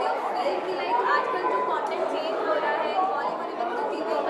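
Chatter of several people talking at once in a crowded indoor room, with no single clear voice.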